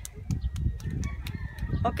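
Hands clapping in a quick run of claps, several a second, as a round of applause, over a low rumble.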